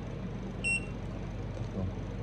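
JY-3 breathalyser giving one short high electronic beep about two-thirds of a second in as it powers off after its button is held down.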